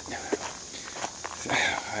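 Footsteps of a person walking on a woodland path, a few steps, with a brief bit of voice near the end.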